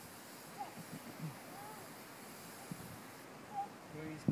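Quiet outdoor ambience: a faint steady hiss with a few faint, short, high chirps scattered through it.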